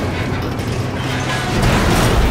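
Metal lattice of a giant dome roof breaking apart: loud, continuous grinding, creaking and crashing of metal, over an orchestral film score.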